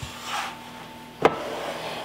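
A plastic mixing bowl sliding across a stone countertop with a soft rub, then a single sharp knock about a second later.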